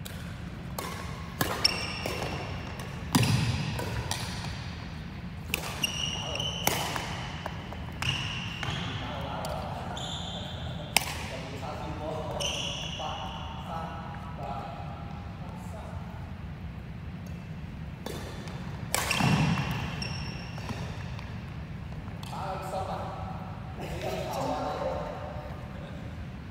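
Doubles badminton rally in a large sports hall: sharp cracks of rackets hitting the shuttlecock, short squeaks of shoes on the wooden court, and a few heavier thuds, over a steady low hum and some voices.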